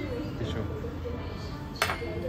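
Brief talking, then a single sharp clink of tableware near the end.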